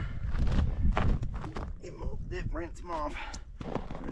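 Footsteps crunching on packed snow, with a low rumble that is loudest in the first second.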